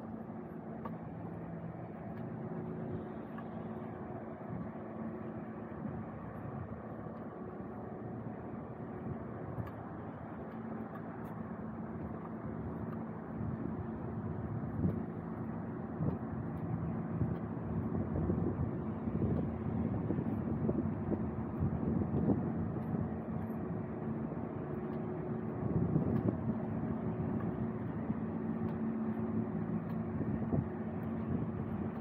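Street traffic: a steady low engine hum under a wash of road noise, growing louder and more uneven in the second half as vehicles pass.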